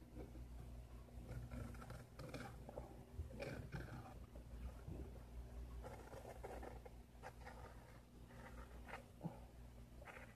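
Faint, scattered scratching and rustling of an index card being handled and scraped with a Buck knife blade, over a low steady hum.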